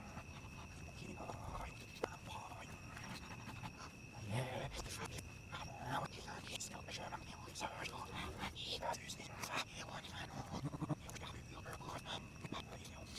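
Faint, indistinct voice sounds with scattered small clicks, over a steady high-pitched whine.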